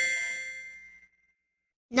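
A single bright, metallic ding from a chime sound effect. It is struck once and rings out, fading over about a second.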